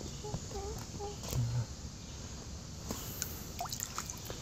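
Faint trickle and drip of water as a hand scoops water from an inflatable kiddie pool, with a few light clicks near the end.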